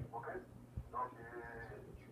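A man's voice, faint: a brief word, then a drawn-out held vocal sound lasting under a second, over a steady low electrical hum.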